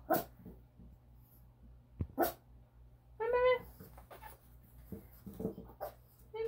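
Morkie puppy giving a single short, high-pitched bark about three seconds in, among a few softer scuffs and snuffles.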